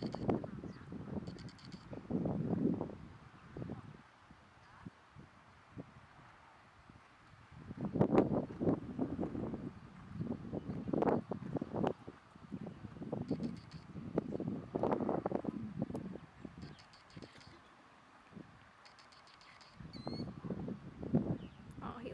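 Small birds chirping in short, repeated bursts, over intermittent low, muffled rumbles.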